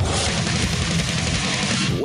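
Loud, dense burst of distorted electric-guitar rock music that cuts off suddenly at the end.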